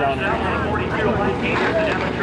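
Voices talking close by over the steady rumble of race car engines running on the dirt track.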